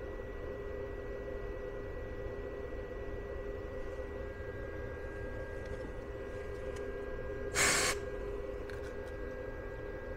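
Battery charger running, a steady hum with a faint high whine, still charging: the battery's low-temperature cutoff has not yet tripped. A brief loud hiss comes about three quarters of the way through.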